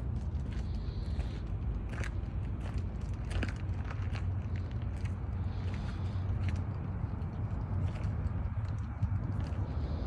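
Footsteps crunching on gravel, in scattered short crackles, over a steady low rumble.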